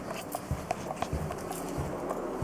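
Footsteps of a person walking on carpet: soft low thuds about two a second, with light clicking and handling noise from the handheld camera.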